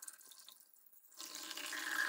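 Oat milk pouring from a carton into a plastic blender jug, a steady pour that starts about a second in.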